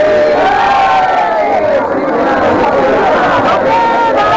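Several conch shells blown at once in long, overlapping notes that bend up and down in pitch, over the voices of a crowd.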